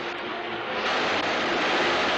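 Cars speeding on an old film soundtrack: a rushing engine and road noise that grows louder about a second in.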